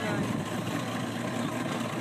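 Motorboat engine running steadily at idle as the boat creeps forward in gear, under an even wash of wind and water noise.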